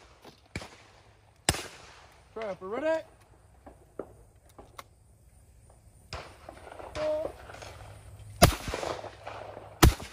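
A single shotgun report about a second and a half in, then a pair of shotgun shots near the end, about a second and a half apart, fired at a pair of clay targets.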